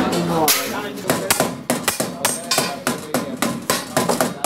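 Hand hammer striking a stainless steel can body and its fitting over a steel anvil bar: quick, irregular metal blows about four a second, starting about half a second in.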